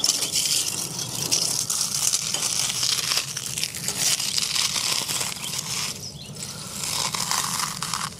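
Carbonized marshmallow pie (charred cookie and marshmallow turned to brittle charcoal) crushed in bare hands: a dense, crackling crunch as the pieces break and crumble, with a short lull about six seconds in.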